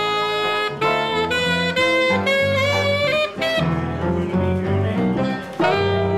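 Small jazz group playing: an alto saxophone carries a melody of held notes and short phrases over an electric bass line.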